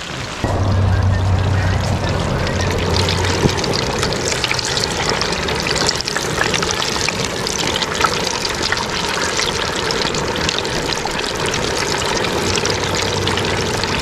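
Breaded bream deep-frying in a pot of hot oil: a steady, crackling sizzle that jumps up in level about half a second in.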